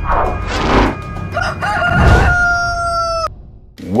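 Two whoosh sound effects, then a rooster crowing: one long held call that dips in pitch at the end and cuts off sharply.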